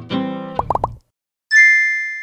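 Channel intro jingle: a short run of music ends in three quick rising blips, then after a half-second gap a bright bell-like ding rings out and fades.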